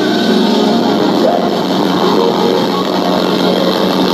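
A live band playing on stage, loud and steady, picked up through a phone's microphone from the audience.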